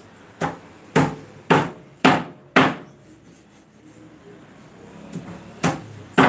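Kitchen knife chopping on a wooden cutting board: five hard chops about two a second, then a pause and another chop near the end.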